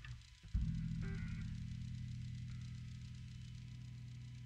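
Electric guitar strings sounding as the guitar is picked up: a low note starts suddenly about half a second in and rings on, slowly fading.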